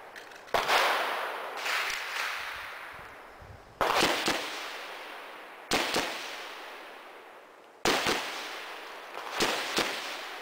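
Gunshots from a firearm at a target range, fired singly a couple of seconds apart and then as a quick string of about three near the end. Each shot has a long echoing tail that dies away before the next.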